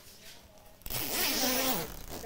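Zipper on a quilted puffer jacket being pulled, one continuous rasp lasting a little over a second that starts just before halfway.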